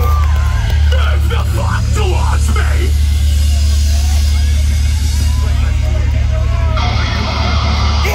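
A live metal band's PA opens a song with a loud, deep, sustained bass drone and no beat yet. Crowd voices yell over it, and a hissing high layer joins near the end.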